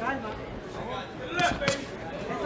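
Two sharp smacks of boxing gloves landing, about one and a half seconds in and a third of a second apart, with voices calling out around them.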